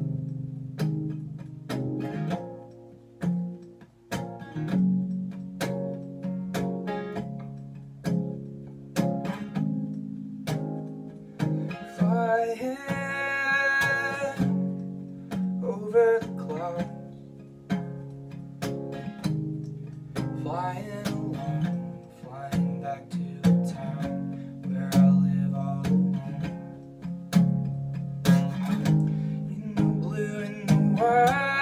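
Steel-string acoustic guitar strummed steadily, with chords rung out stroke after stroke.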